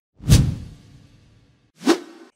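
Whoosh sound effects of an animated logo intro. A deep whoosh starts about a quarter second in and fades out over about a second. A second, shorter whoosh comes near the end.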